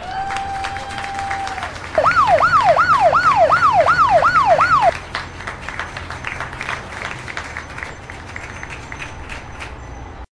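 Emergency vehicle siren: one steady tone for nearly two seconds, then a fast wail sweeping up and down about three times a second for three seconds, over a steady hiss of city background noise.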